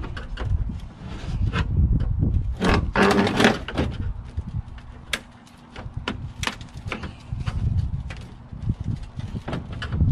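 A fire-damaged computer case being handled on a pickup tailgate: scattered knocks and clicks, with a louder stretch of scraping about three seconds in.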